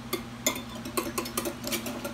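Small wire whisk clicking against the side of a glass bowl while whisking a thin sauce, about three or four light ticks a second.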